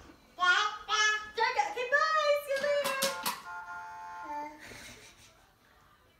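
A baby's high-pitched babbling squeals, then a few sharp clacks and a short, steady electronic toy tone that steps down in pitch.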